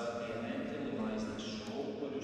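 A man's voice speaking steadily into a microphone: a priest reciting a prayer at the altar.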